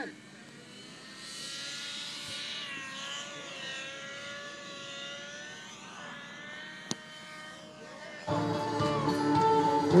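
Electric RC helicopter (Gaui NX4) with a high motor and rotor whine whose pitch wavers up and down as it lifts off and flies. Loud guitar music comes in over it about eight seconds in.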